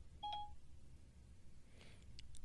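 A single short electronic beep from an iPhone about a quarter second in: Siri's tone as it stops listening to a spoken request. Otherwise a quiet room.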